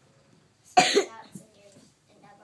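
A single loud cough by a person, about three-quarters of a second in, lasting about a third of a second.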